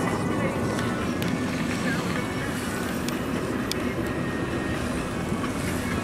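Steady road and engine noise inside a moving car's cabin, a low rumble with a few faint ticks.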